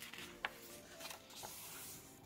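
Faint rustle of a paper page of a picture book being turned by hand, with a small click about half a second in.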